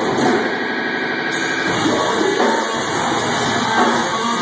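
Live heavy band playing loud, with distorted electric guitars, bass and drums in a dense wall of sound, picked up from the back of a club hall.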